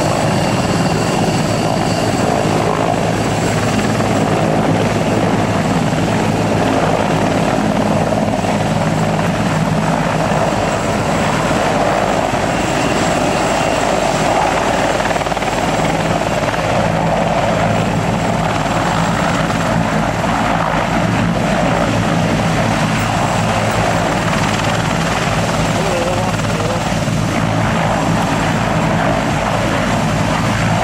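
Sikorsky CH-53G heavy-lift helicopter hovering low and setting down. It gives a loud, steady rotor thrum over the whine of its twin turboshaft engines, with thin high turbine tones.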